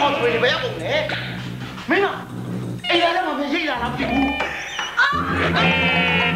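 Vocal wailing and crying out in short calls that swoop up and down in pitch, over background music. Near the end, the music settles into a steady held chord.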